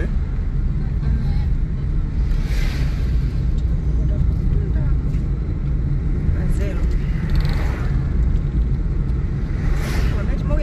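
Steady low rumble of a car driving along a paved road, heard from inside the cabin, with a couple of swells of rushing noise from passing traffic.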